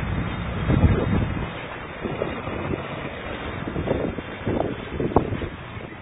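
Wind buffeting the microphone: a low rumbling noise, heaviest in the first second and a half and then lighter, with a few faint cracks scattered through it.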